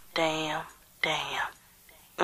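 Two short unaccompanied vocal phrases, each about half a second long, with silence between them and no music behind.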